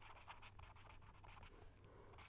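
Faint scratching of a pen writing on paper, a quick run of small strokes as words are written out by hand.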